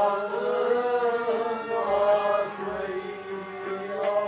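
Kashmiri Sufi devotional song (kalam) sung to a harmonium, the voice moving over a steady held harmonium drone.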